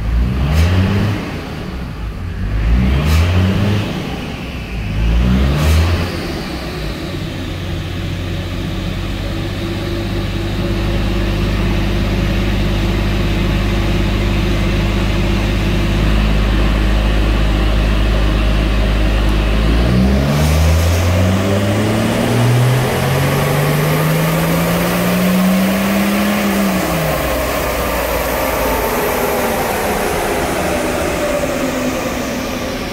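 Turbocharged Toyota 1HZ straight-six diesel running on a chassis dyno, heard from inside the cab on a very lean tune. It revs up in three quick rises, holds a steady note, then about twenty seconds in climbs in one long ramp run that peaks near the end and drops away as the throttle comes off.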